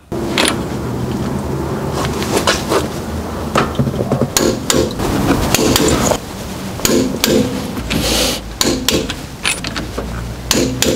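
A click-type torque wrench and socket tightening wheel-spacer nuts on a Land Rover Defender hub: a run of irregular sharp metal clicks and knocks over a steady background noise.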